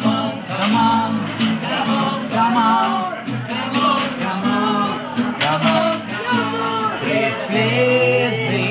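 Acoustic guitar strummed while a voice sings a melody over it.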